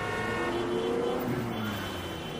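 Road traffic: a car drives past, its engine pitch rising and then falling away as it goes by.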